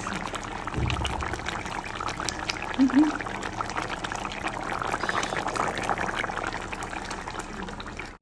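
A thick curry bubbling hard in a steel pan, with a steady run of small pops and gurgles as bubbles burst at the surface. There is a brief low thump about a second in.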